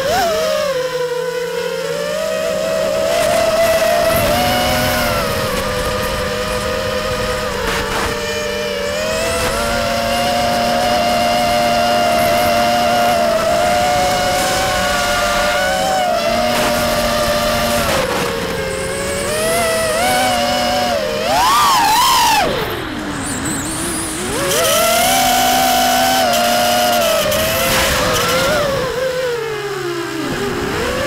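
Walkera Furious 215 racing quadcopter's four 2500KV brushless motors spinning 5-inch three-blade props: a buzzing whine of several close pitches that rises and falls with throttle. About 21 seconds in the pitch shoots up, then drops low as the throttle is cut, and climbs back a few seconds later.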